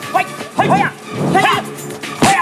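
Movie fight sound effects: sharp punch and kick hits, several in two seconds, each with a short yelled cry from the fighters, over background music.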